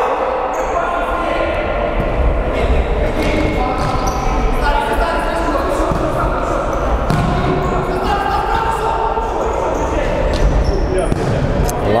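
Futsal ball being kicked and bouncing on the hard floor of a sports hall, the knocks echoing in the large hall.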